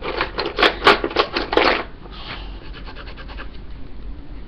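Coloring supplies being rummaged through at close range: a quick run of clicks and rubbing for about two seconds, then fainter ticks and rubbing.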